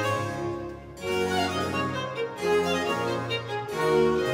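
Baroque period-instrument ensemble playing, harpsichord continuo with bowed strings, the bass line moving from note to note about once a second.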